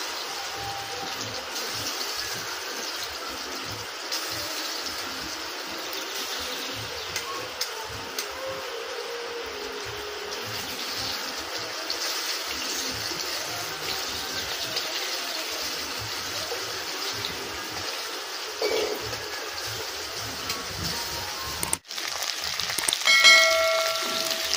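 Marinated chicken pieces frying in hot oil in an iron wok, a steady sizzle, with occasional knocks of a metal spatula turning them. A short ringing chime comes near the end.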